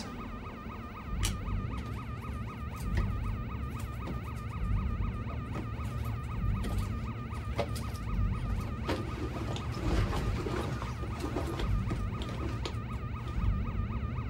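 A shipboard electronic alarm sounds continuously inside a submarine with a fast, even warble, over a low rumble and occasional metallic clanks. It is the alarm of a reactor emergency: the reactor is running out of control with its cooling pumps dead.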